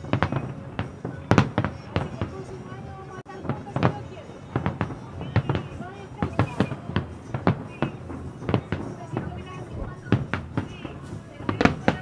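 Aerial fireworks display: shells bursting in a steady series of sharp bangs, about one or two a second, with people's voices underneath.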